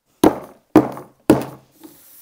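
A lump of coal banged down hard on a tabletop three times, about half a second apart, crumbling and scattering bits on each knock.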